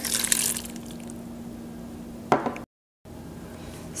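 Water poured from a small cup into a blender jar packed with chopped vegetables, a short splashing pour in the first second. Then a faint steady hum with one short knock just after two seconds, and a sudden cut to silence.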